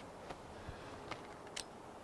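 A few faint clicks and light handling knocks from a DSLR and the quick-release mount of a video tripod head as the camera is taken off the tripod.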